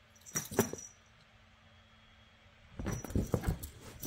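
The beads on a cat's wand toy rattle and click in two bursts, about half a second in and again near the end. The second, longer burst carries dull thumps as the cat pounces on the toy.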